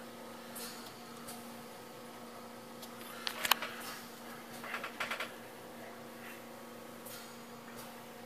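Steady low hum from a running desktop computer while it boots. One sharp click comes about three and a half seconds in, and a few softer clicks follow around five seconds.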